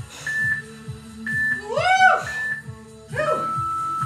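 Interval workout timer beeping: three short beeps about a second apart, then a longer beep that marks the end of the work interval, over workout music with a steady beat.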